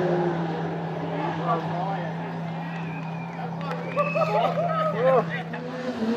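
Bystanders' voices chattering, clustered about four to five seconds in, over a steady low hum.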